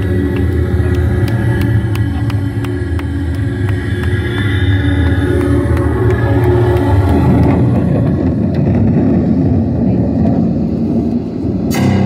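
Symphonic black metal band playing live, loud and distorted through a phone microphone: heavy guitars and drums with steady beats about two or three a second at first, turning to a denser wash of sound, with a sharp loud hit just before the end as a keyboard-led section comes in.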